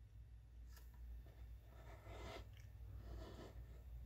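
Near silence: room tone with a steady low hum and a few faint, soft sounds.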